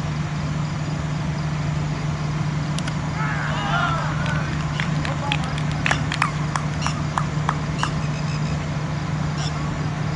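Open cricket-ground sound through the stream camera's microphone under a steady low hum: a player's shout about three seconds in, then a quick run of sharp claps or clicks over the next few seconds.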